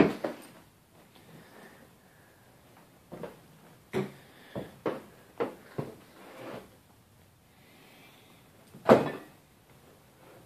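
Household door and cupboard knocks in a small room: a sharp knock at the start, then a run of short knocks and clunks a few seconds in, and a louder thump near the end.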